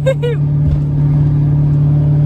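Chevrolet Silverado single-cab pickup cruising at a steady speed, heard from inside the cab: an even engine drone holding one pitch, over low road noise.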